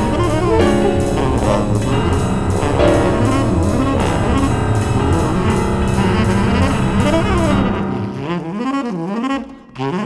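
Improvised contemporary jazz ensemble playing densely: tenor saxophone and trombone over piano and live electronics. About eight seconds in the full texture drops away, leaving a lone saxophone line sliding up and down in pitch.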